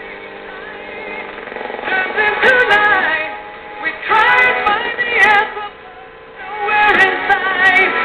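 A crystal radio receiving a local AM broadcast station. The station is playing music with singing, thin and cut off in the treble, and it rises from faint to loud about a second in as the tuning capacitor is turned onto the station. It drops briefly near the end before coming back.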